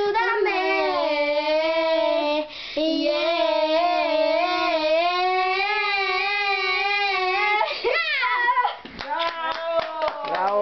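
Young girls singing a cappella, holding long wavering notes with a short break about two and a half seconds in. Near the end the singing stops and a run of sharp taps follows.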